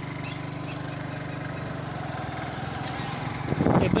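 Motorcycle engine running at a steady speed while riding, a low even hum. Near the end a loud rush of wind on the microphone and a voice cut in.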